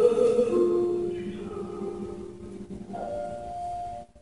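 A baritone sings a French art song with grand piano accompaniment. The voice holds a note over the first second or so and then drops out, leaving the piano, which strikes a chord about three seconds in.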